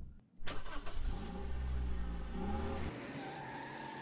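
Car engine running and revving as the car pulls away: a low rumble with a rising pitch in the middle that drops off about three seconds in.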